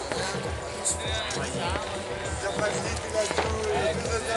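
Several people talking in the background with music playing.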